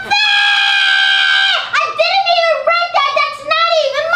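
A woman's high-pitched wail held for about a second and a half, then a run of shorter whining cries that dip and rise in pitch and end on a falling note: a put-on, child-like crying tantrum.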